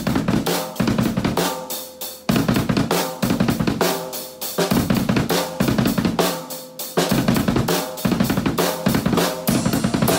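A rock groove on a drum kit with a double bass drum pedal: fast kick-drum strokes under snare hits and cymbals. The playing gets busier near the end.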